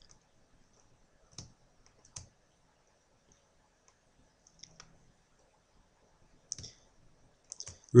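Faint, scattered clicks of a computer mouse, about eight of them, spaced a second or more apart and some in close pairs, as points are clicked onto a 3D model on screen.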